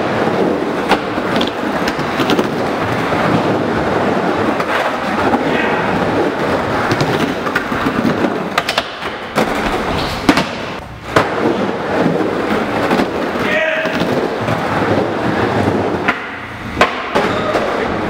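Skateboard wheels rolling and carving around a wooden bowl in a continuous rumble, broken by a few sharp knocks, the loudest about ten and eleven seconds in.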